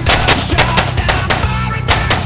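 A rapid string of pistol shots, many in quick succession, heard over loud rock music.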